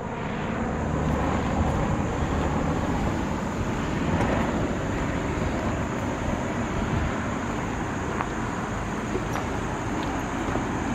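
Steady low outdoor rumble of distant engine noise, swelling slightly a second or two in and then easing.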